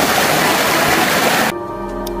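Loud, steady rush of water from a mountain stream tumbling over rocks, cut off abruptly about one and a half seconds in by soft music with long held notes.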